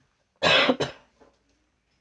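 A woman coughing twice in quick succession, close to a microphone, about half a second in; the second cough is shorter.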